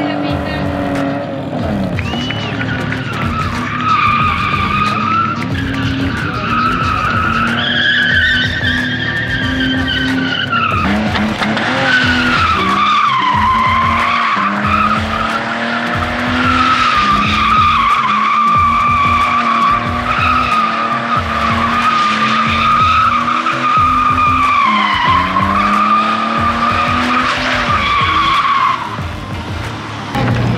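BMW E46 coupe drifting: the engine revs up and down under throttle while the rear tyres squeal in a long, wavering high tone.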